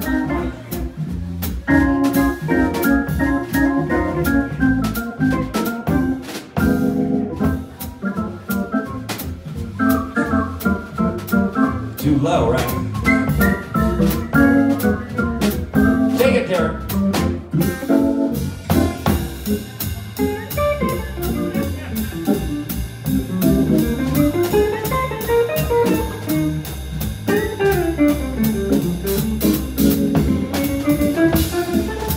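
Live jazz organ trio playing: a Hammond B3 organ carrying held chords, melody runs and a walking bass line, over a drum kit with cymbal time and electric guitar.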